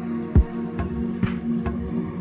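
Ambient electronic music: a sustained low synth drone over a drum-machine beat played on a Korg Volca Sample, with a deep kick drum just under half a second in and lighter hits after it.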